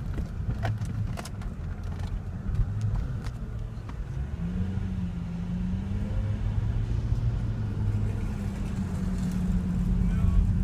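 Inside a car cabin while driving slowly: a low engine and road rumble with a steady engine hum that rises slightly in pitch about halfway through. A few light clicks in the first seconds.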